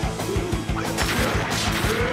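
Fight-scene sound effects over action music with a driving drum beat, with a loud crash about one and a half seconds in.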